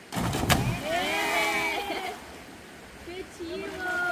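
A person plunging feet-first into a river pool: a sudden heavy splash right at the start, loudest about half a second in. Voices of onlookers call out with rising and falling pitch for about a second after it, followed by quieter talk.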